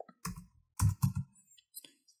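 Computer keyboard keys being typed: a few quick keystrokes in two short clusters.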